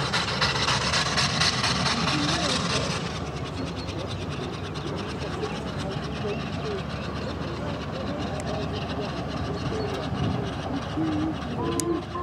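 LMS Jubilee class three-cylinder 4-6-0 steam locomotive working a train in the distance. A hiss runs over it for the first three seconds and then stops abruptly.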